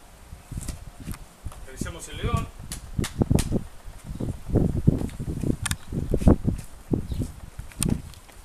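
Footsteps and scuffs of a person climbing down off stone blocks and walking over rocky, gravelly ground, with sharp clicks of shoes on stone and uneven low rumbles of wind on the microphone. A brief wavering voice sound comes about two seconds in.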